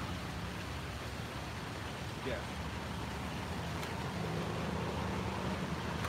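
Steady city street traffic noise, with a vehicle engine's low hum coming through more clearly in the second half.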